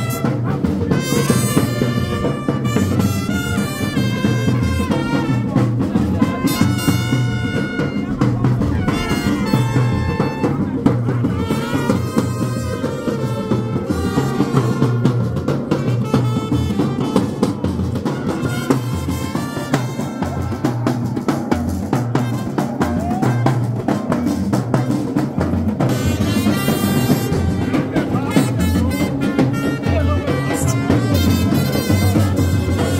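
Brass band playing: trumpets carrying a melody over a steady drum beat.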